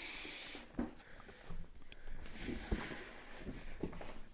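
A large cardboard box being handled: a brief hissing slide of cardboard at the start, then scattered light knocks and rubs as the box is gripped and tilted.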